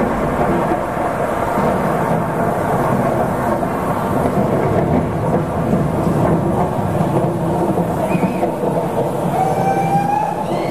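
Live rock band playing a dense, sustained wall of distorted guitar drone with a rumbling low end and no clear beat, heard through an audience recording in an arena.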